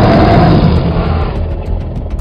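Dinosaur roar sound effect: one long, loud roar that fades away about a second and a half in, over background music with a low rumble.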